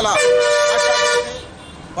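A vehicle horn gives one steady honk of about a second, then cuts off.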